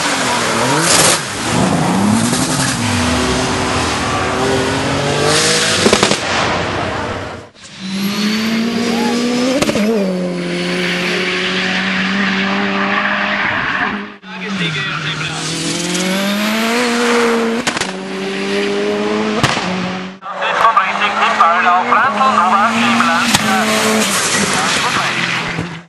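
Hill-climb race cars at full throttle in a run of short clips, engine notes climbing and dropping through gear changes. Sharp bangs from the exhausts stand out among them: backfires on the overrun.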